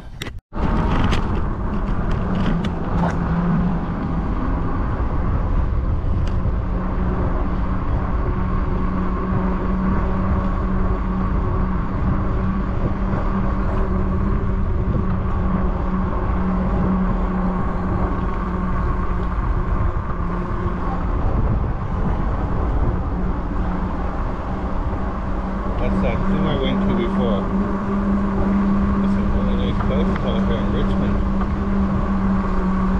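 Steady riding noise from a Rad Runner Plus e-bike on a paved path: wind rumbling on the microphone and tyres rolling, with a steady low hum throughout. There is a brief dropout about half a second in.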